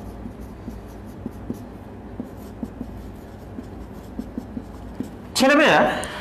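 Marker pen writing on a whiteboard: a quiet run of small scratches and taps as words are written, followed by a brief spoken phrase near the end.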